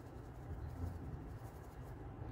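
Felt-tip marker faintly scribbling over a flattened disc of soft white Model Magic clay, colouring it in so that the clay can be folded and tinted blue.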